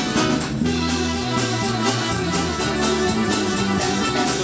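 Live band playing an instrumental passage: strummed and plucked acoustic guitars over held piano accordion notes, with a steady rhythm and a moving bass line.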